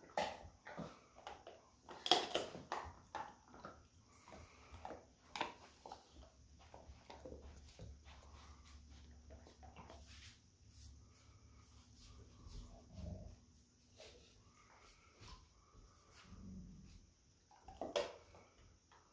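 A golden retriever and a puppy scuffling at close quarters: scattered sharp clicks and knocks of mouths, teeth and paws, with low dog grumbles. The loudest burst of clicks comes about two seconds in.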